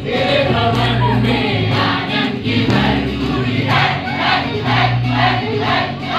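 A crowd singing a worship song together with amplified band music, with a steady bass line and hand-clapping on the beat.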